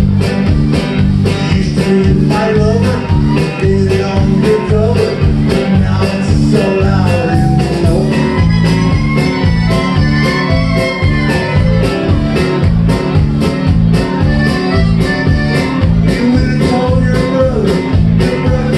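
Live band playing a country-style tune with a steady beat: piano accordion with twelve-string guitar, electric bass and drums.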